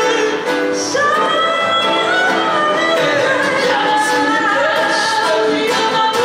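A band performing a song live, with singing over strummed acoustic guitars.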